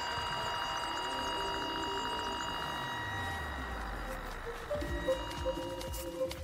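Steady high electronic tone from a cable-finder receiver picking up the signal sent down a buried robotic-mower control wire, with a low sound falling slowly in pitch. Background music comes in about five seconds in.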